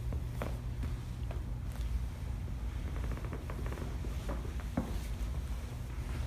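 Soft rustling and scattered light knocks of two grapplers in cotton gis shifting and repositioning on a foam mat, over a steady low hum.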